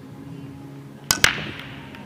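Nine-ball break shot on a pool table: two sharp cracks about a second in, the cue tip striking the cue ball and, a split second later, the cue ball smashing into the rack. A fading clatter of balls clicking against each other follows as the rack scatters.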